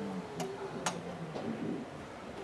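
Hushed congregation at prayer: a faint low murmur with three sharp clicks in quick succession within the first second and a half.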